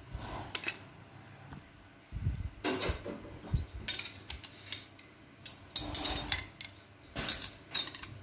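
Irregular metal clinks and knocks from handling a red Japanese pipe wrench with a drop-forged hook jaw, as the jaw is opened and a steel ruler is laid against it.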